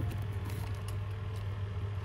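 A small box cutter slitting the packing tape along the seam of a cardboard box, a steady unpitched scraping, over a steady low hum.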